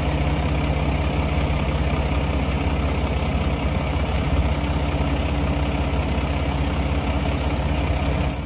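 Dump truck's diesel engine running steadily with the PTO engaged, driving the hydraulic pump that raises the Brandon FHD high-lift dump body.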